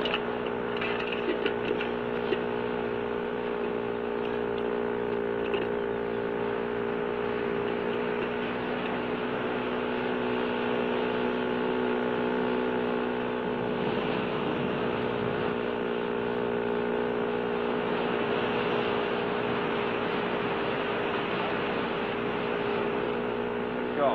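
An engine running at a steady drone, holding one pitch with no revving or change throughout.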